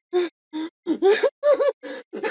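A person's voice in short gasping bursts, about five in two seconds, growing louder and higher-pitched toward the end and turning laugh-like.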